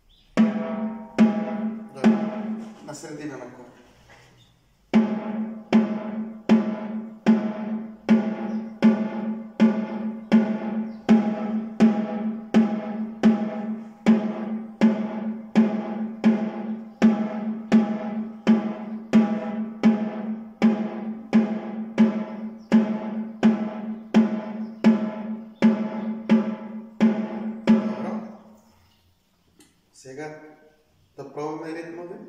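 A snare drum struck with drumsticks, one stroke at a time at an even, slow pace of about two a second, each stroke ringing. This is a beginner's exercise of a set number of strokes per hand. The strokes falter and break off about four seconds in, start again a second later, and stop shortly before the end.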